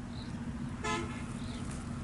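A short horn toot about a second in, over a steady low engine drone.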